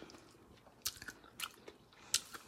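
Faint chewing of a mouthful of fried cabbage, with three short soft mouth clicks in the second half.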